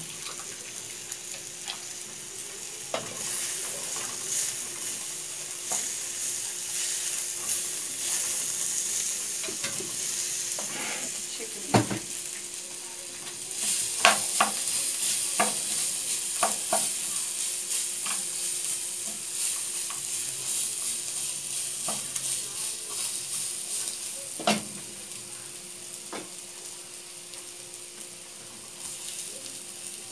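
Diced calabresa sausage and garlic sizzling as they fry in oil in an aluminium pot, stirred with a wooden spoon that knocks against the pot now and then. The loudest knock comes about twelve seconds in, and the sizzle is strongest through the middle.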